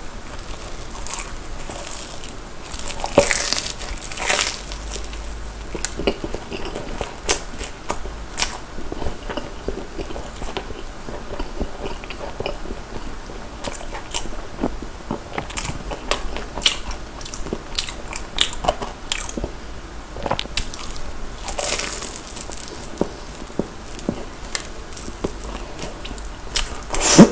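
Close-miked crunching bites into a corn dog crusted with fried potato cubes, with loud crunches about three seconds in and again about three-quarters of the way through, and open-mouthed chewing with many small crisp crackles in between.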